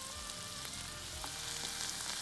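Chopped onions and tomatoes frying in oil in a pan: a steady sizzle with a few light clicks.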